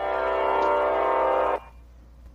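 A held, droning music chord from the song's beat that cuts off suddenly about one and a half seconds in, leaving only a faint low hum.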